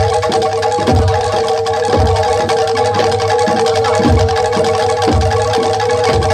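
Gamelan accompaniment for a Jaranan Dor dance: metallophones ring with steady tones over a deep drum beat that falls roughly once a second.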